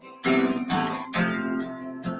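Acoustic guitar strummed, chords ringing between sung lines of a folk song, with two strong strums about a second apart.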